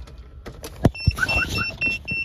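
A few sharp clicks, then a quick run of short, high electronic beeps, about five a second, starting about a second in.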